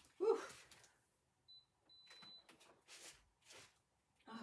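A high electronic beep, a short one and then a longer one, followed by a few faint clicks.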